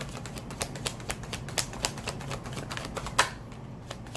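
A tarot deck being shuffled by hand: a quick, irregular run of light card clicks and taps, with one louder snap about three seconds in.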